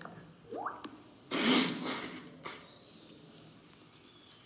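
Close breathy mouth or nose noise from a person: a short upward-gliding sound, then a loud rush of air lasting under a second, and a brief second puff.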